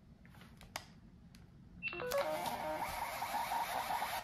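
A handheld electronic ticket machine gives a short high beep, then its built-in ticket printer whirs for about two seconds, feeding out a paper ticket.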